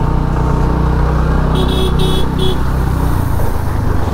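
Scooter engine running steadily at low speed in slow traffic, with a vehicle horn beeping three short times about a second and a half in.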